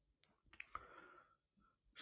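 Near silence, with a few faint clicks and a soft breathy hiss about half a second to a second in.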